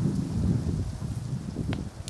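Wind buffeting the microphone: an uneven low rumble, with faint rustling.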